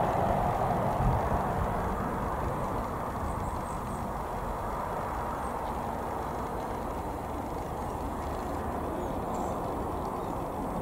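Road traffic noise: a passing vehicle fades away over the first few seconds into a steady distant hum of traffic.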